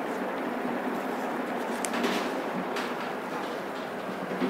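Steady room noise, an even hiss with no speech, broken by a few faint soft clicks or rustles near the middle.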